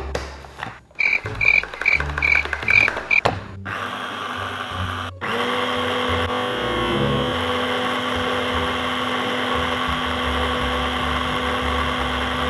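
Small electric mini chopper's motor running steadily, mixing flour, baking powder and salt. It starts about four seconds in, cuts out briefly just after five seconds, then runs on until near the end. Before it come six short, evenly spaced high pulses.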